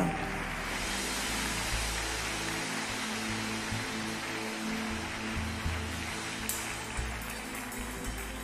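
Congregation clapping and cheering, with steady low music from the church band underneath.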